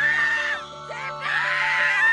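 Excited, high-pitched screaming in long held shrieks, over background music.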